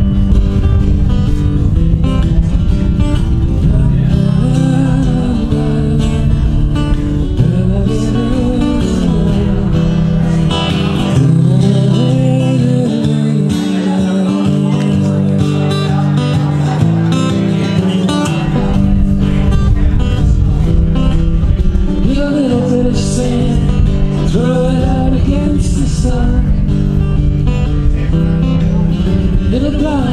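Acoustic guitar strumming a country-style tune, with a melody line that bends up and down over it.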